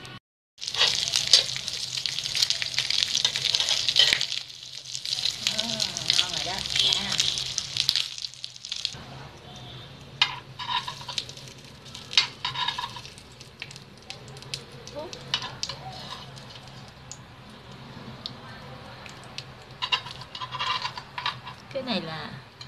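Bánh khọt cakes frying in oil in a metal bánh khọt mold, a loud sizzle for the first eight seconds or so. After that the sizzle is quieter, with scattered clicks and scrapes of a metal spoon lifting the little cakes out of the mold cups.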